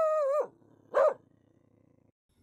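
A dog's drawn-out, steady-pitched call ending, then one short bark about a second in.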